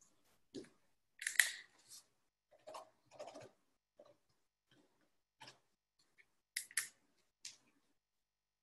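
Faint, scattered clicks and short crackling bursts, about a dozen, with dead silence between them, heard over a video-call audio line. The loudest come about a second and a half in and near the end.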